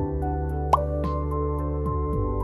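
Soft electronic background music with sustained keyboard chords and light high ticks about four a second. About a third of the way in comes a single short, rising 'bloop'.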